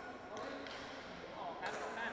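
Indistinct voices chattering in a large, echoing sports hall, with a faint knock early and a sharp smack near the end.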